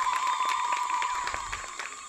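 Public-address feedback ringing from the microphone and loudspeaker: one steady high tone, held for about two seconds and slowly fading.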